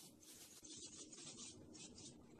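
Near silence: faint background hiss with a soft, uneven flicker.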